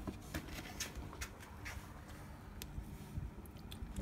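Faint, irregular light clicks and taps over low background noise: handling sounds around the blender bowl, with the blade stopped.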